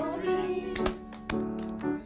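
A choir song with children's and adults' voices over instrumental accompaniment, with several sharp hand claps in the middle.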